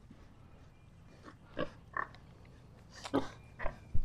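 A few short grunts and squeaks from sows and young piglets, spread through an otherwise quiet stretch, the loudest just past three seconds in.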